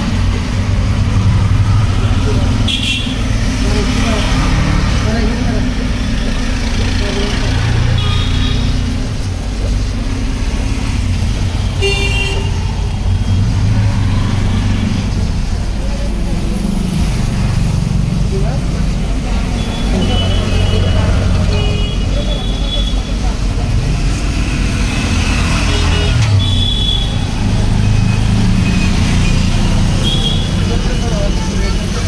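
Steady rumble of road traffic with background voices, and brief horn toots a few times.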